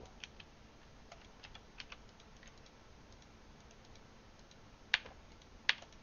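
Scattered light clicks of a computer mouse and keyboard, with two sharper clicks about five seconds in, under a second apart.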